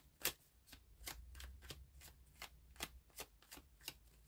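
A tarot deck being shuffled by hand: a run of faint, crisp card clicks, about three a second.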